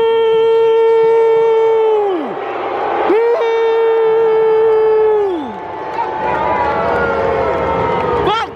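Two long, loud horn blasts, each about two seconds, the pitch swooping up at the start and sagging down at the end. Crowd noise runs underneath.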